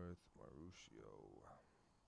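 A man's voice speaking faintly and indistinctly during the first second and a half.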